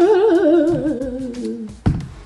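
A woman's voice sings one long note with a wide vibrato, sliding downward in pitch for about a second and a half, followed by a short knock.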